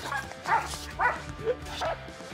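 German Shepherd barking four times, about one bark every half second.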